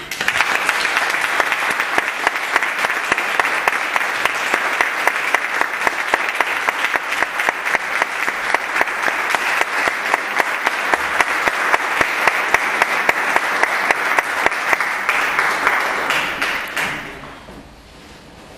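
Audience applauding at the end of a song, a dense patter of clapping that holds steady, then dies away near the end.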